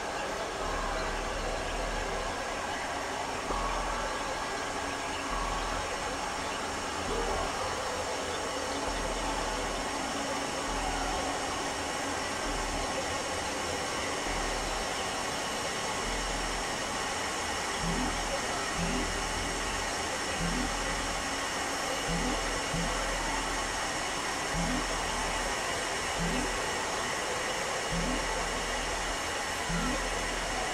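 Experimental synthesizer noise drone: a dense steady hiss layered with many held tones and a low hum that switches on and off. From about eighteen seconds in, short low rising blips repeat roughly once a second.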